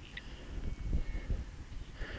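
Handheld pinpinter probe being worked in a freshly dug hole in loose soil: faint rustling and scraping of dirt, with a brief high beep near the start and a thin, faint high tone lasting about half a second.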